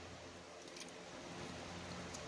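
Faint steady background hum and hiss, with a couple of faint ticks about a second in.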